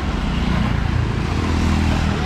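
A motorbike passing on the street, its engine a steady low hum over the general noise of traffic.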